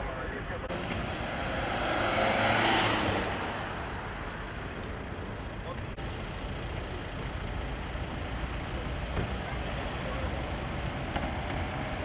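Road traffic noise, with a vehicle passing close by: it swells to its loudest between two and three seconds in, then fades back into the steady traffic.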